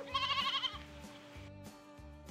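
A single wavering sheep bleat lasting under a second, near the start, over quiet background music with a soft low beat.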